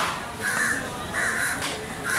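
Crows cawing, two harsh caws in quick succession, with a sharp knock right at the start, likely the knife striking the wooden block.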